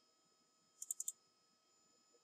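Faint computer mouse clicks: a quick run of four sharp clicks about a second in.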